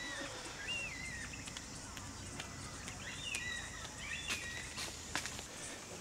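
Quiet outdoor ambience with faint bird calls: a few short chirps and whistles heard now and then over a low background rumble.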